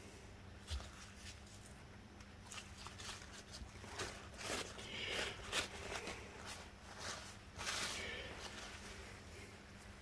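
Blue paper shop towel crinkling and rustling in short, soft scratches, busiest in the middle seconds, as gloved hands press it around a foam air filter to blot the cleaning fluid out of the foam.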